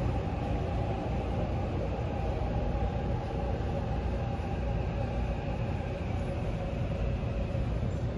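Seoul Subway Line 6 train heard from inside the car as it pulls into the station: a steady low rumble with a faint steady whine over it.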